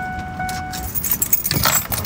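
A bunch of keys jangling in rapid clinks, starting about a second in. Before that, a steady high electronic tone sounds and then cuts off.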